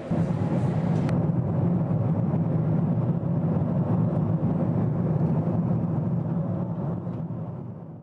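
Steady, loud rumble of a jet airliner heard from inside the cabin, with a single click about a second in; it fades out near the end.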